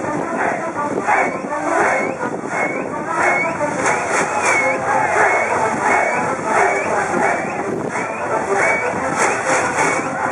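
A large school cheering section chanting and shouting together in a steady rhythm, about three beats every two seconds.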